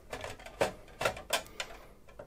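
A string of light, irregular clicks and taps as an AMD Radeon graphics card's metal bracket and edge knock against the PC case's rear slot brackets and the PCIe slot while it is lined up for fitting.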